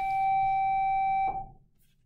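School bell tone marking the end of a class period: one steady pitched tone that holds, then cuts off about 1.3 seconds in and dies away.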